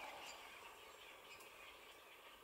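Near silence: faint outdoor background with faint, distant bird calls.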